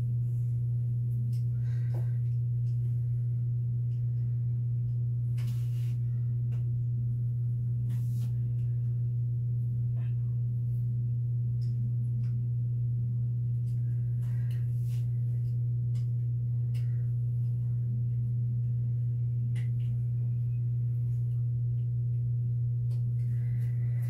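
A steady low-pitched hum that does not change, with a few faint soft taps and rustles over it.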